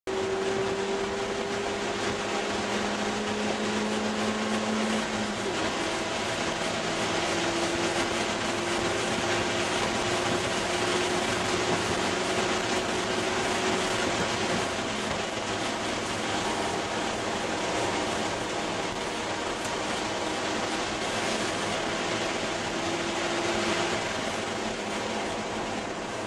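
2001 Ford Escort ZX2's four-cylinder engine running hard at track speed, heard from inside the cabin over wind and road noise. Its note climbs slowly and drops back a few times as the driver changes gear.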